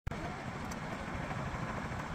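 Steady outdoor background noise with a low rumble, opening with a sharp click as the recording starts.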